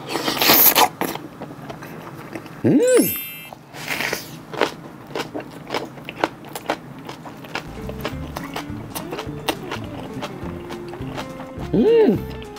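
Close-miked eating of raw oysters scooped with a spoon: a loud wet slurp as they go in, then chewing with many small wet clicks, broken by a short hummed 'mm' about three seconds in. Quiet background music comes in during the second half.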